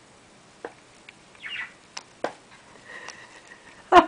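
Hedgehog sniffing and nosing at a wristwatch: short, irregular sniffs and light clicks, with one longer sniffing burst about one and a half seconds in. A person's voice breaks in at the very end.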